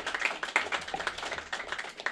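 Audience applauding with a dense patter of many hands clapping.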